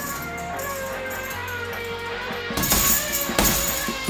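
Background hip-hop track. It opens with a stretch of held melodic notes and no beat, and the drums come back in about two and a half seconds in.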